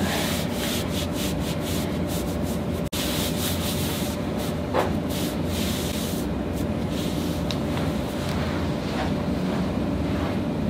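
A hand rubbing over sweatshirt fabric on a person's back, a steady scratchy rubbing with quick strokes in the first few seconds. The sound drops out for an instant about three seconds in.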